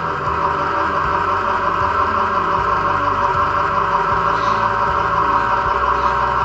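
Home stainless-steel screw oil press running under load as it crushes almonds: a steady motor hum and whine with a hissing, grinding noise, unchanging throughout.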